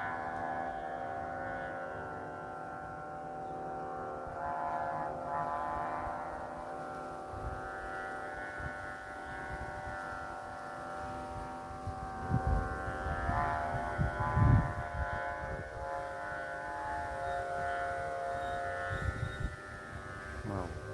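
Kite flutes droning in the wind: several steady tones sound together as one sustained chord that swells and fades slightly. Wind buffets the microphone in low gusts about twelve to fifteen seconds in.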